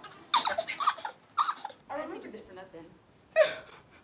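Young women's voices in short bursts of laughter and breathy gasps, a handful of separate outbursts, the loudest one a little before the end.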